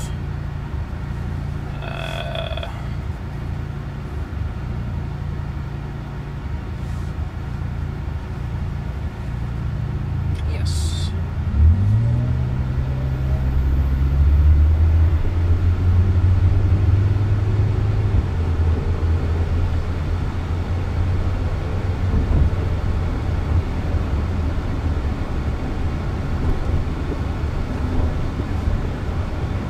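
Cabin noise inside a Waymo Jaguar I-PACE electric robotaxi. A low hum while the car waits in traffic, then about twelve seconds in a low drone rises in pitch as the car pulls away, with road noise growing louder.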